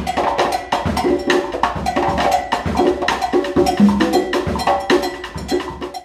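Afro-Cuban percussion groove: congas struck by hand, with cowbell and drum kit, in a fast steady rhythm of several sharp strikes a second and deeper conga tones. The sound drops away right at the end.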